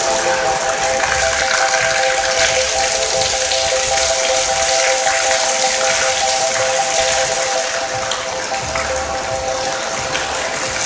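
Fountain water jets splashing steadily into a stone basin, under background music of long held chord tones.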